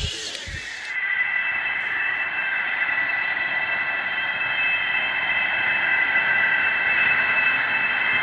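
A steady drone of several held high tones over a hiss, slowly growing louder, after a few sharp clicks in the first second: an eerie ambient soundtrack bed for a horror film.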